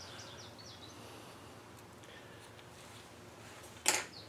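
Quiet workshop background hiss, with a few faint, short bird chirps in the first second.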